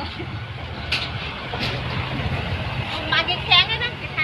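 People's voices talking, loudest about three seconds in, over a steady low hum, with a couple of short clicks.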